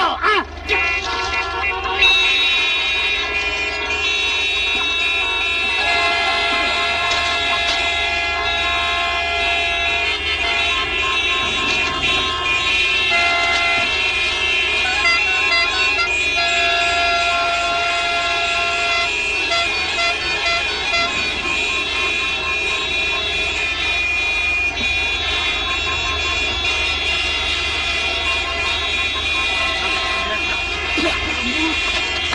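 A long line of stopped cars honking their horns together, several held horns of different pitches overlapping without a break: a traffic jam of impatient drivers. The honking starts about two seconds in, after a shout.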